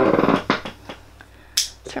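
A few small sharp clicks, the sharpest about one and a half seconds in, as a wall light switch is flipped to turn the room lights back on.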